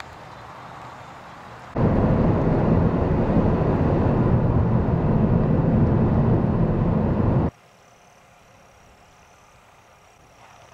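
Loud road and wind noise of a moving car, starting suddenly about two seconds in and cutting off suddenly about seven and a half seconds in. Quiet outdoor ambience lies on either side of it, with a faint steady high tone near the end.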